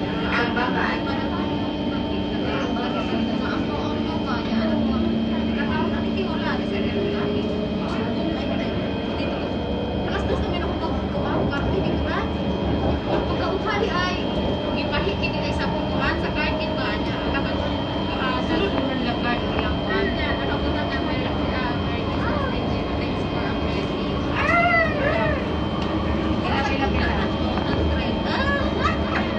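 Ride noise heard inside an MRT train carriage as it pulls out of a station and runs on elevated track. Steady electric whine and hum from the train under a constant rumble of wheels on the rails.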